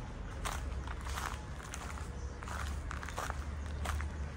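Footsteps of a person walking at an even pace, about one step every two-thirds of a second, over a steady low rumble.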